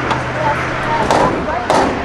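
Distant shouts and calls from people on and beside a football field, with two short, sharp noisy bursts, the first a little after a second in and the second near the end.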